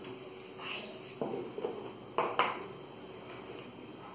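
Snap-on lid of a plastic salt canister being pulled off and set down on the table: a few light plastic clicks and knocks, one about a second in and a sharper pair just after two seconds in.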